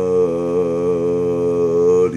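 A man's voice holding one long, drawn-out "ohhh" at a nearly steady pitch with a slight waver.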